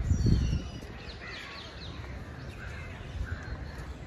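Birds calling: a quick run of high, falling chirps in the first second, then scattered short calls, over a steady low outdoor background.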